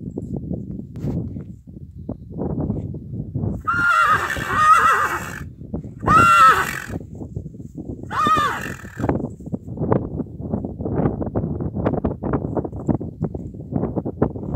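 Draft horse whinnying three times, each call a wavering high neigh lasting about a second, at about four, six and eight seconds in.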